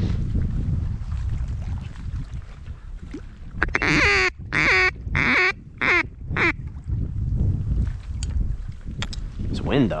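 A mallard-hen-style quack series: five loud quacks starting about four seconds in, each shorter than the one before.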